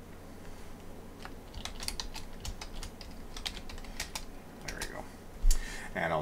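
Computer keyboard typing: an irregular run of keystrokes starting about a second in, then a single loud low thump near the end.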